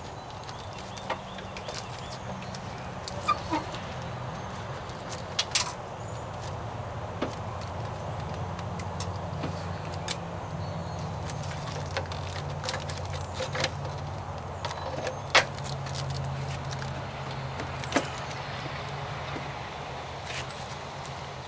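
Scattered sharp clicks and knocks of a plastic headlight assembly being handled and pressed into its mounting holes on a minivan's front end, the loudest near the end. Under them a steady low hum and a faint steady high-pitched whine.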